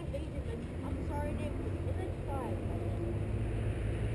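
Dirt bike engine idling, a steady low rumble.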